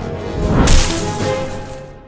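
A loud cartoon whoosh as a flying squirrel glides through the air. It swells to a peak about half a second to a second in, then fades, over a film score.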